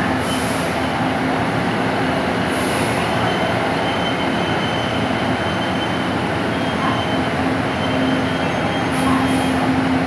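Taiwan Railways DR3100 diesel multiple unit rolling slowly alongside the platform as it brakes to a stop. A steady rumble carries its diesel engine hum, which grows stronger near the end, and a faint high squeal from the brakes and wheels.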